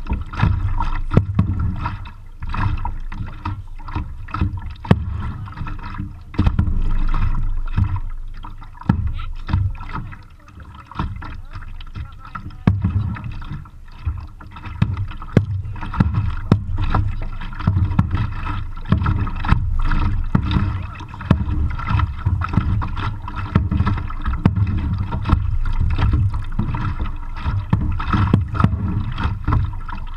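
Double-bladed kayak paddle strokes, the blades splashing into the water with many small sharp splashes and drips, over an uneven low rumble from the camera's microphone.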